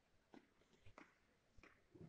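Near silence: room tone with three or four faint soft ticks, spaced about two-thirds of a second apart.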